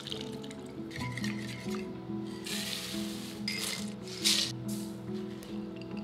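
Background music with a light, repeating melody. About halfway through, two short noisy rustles or scrapes sound over it, the second a little louder.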